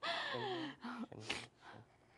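A performer's breathy vocal exclamation, gasp-like and falling in pitch over under a second, followed by a few short, fainter breaths or laughs that fade away.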